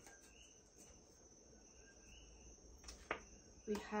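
Faint calls of coquí frogs, two calls, each a low note followed by a higher chirp, over quiet room tone. A soft tap of cards being handled comes near the end.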